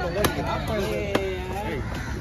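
A heavy knife chopping through fish onto a wooden log chopping block, two sharp chops about a second apart, with voices talking alongside.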